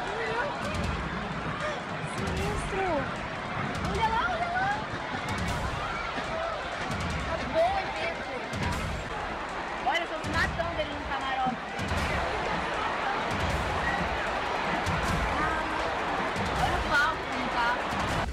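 Large crowd running in panic: a dense din of many voices with shouts and screams rising over it, and frequent low thumps and sharp knocks.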